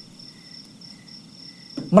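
Faint, steady, high-pitched insect-like chirring in a pause between a man's spoken phrases; his voice comes back at the very end.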